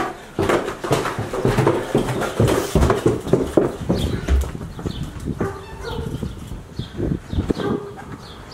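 Footsteps and knocks on wooden stairs and porch boards: a quick, irregular run of thuds and clacks, heaviest in the first half, with a couple of heavier low thumps.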